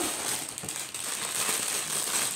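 Thin plastic Lego parts bags crinkling and rustling as they are handled and pulled out of the set's cardboard box, a continuous dense crackle.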